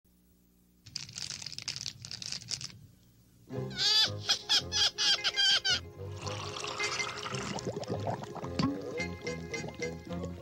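Cartoon music with bubbling and pouring-liquid sound effects, starting after about a second of silence; a voice says "oh" about a third of the way in.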